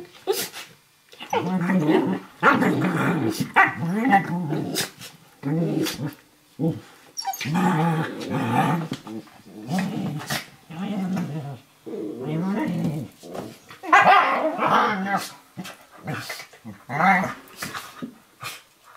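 Two dogs, a Eurohound puppy and a Nova Scotia Duck Tolling Retriever, growling during play-wrestling, in repeated bursts of about a second, with short sharp clicks between. It sounds fierce but is play, not aggression.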